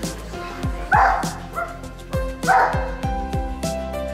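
A dog barks twice, about a second and a half apart, over background music with a steady beat.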